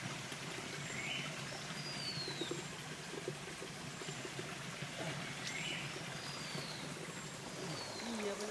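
Small forest stream trickling steadily, with a bird calling twice: each call a short rising note followed by a high whistle that slides downward.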